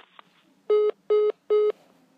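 Telephone call-ended tone: three short, identical electronic beeps about 0.4 s apart, sounding after the other party hangs up and the line disconnects.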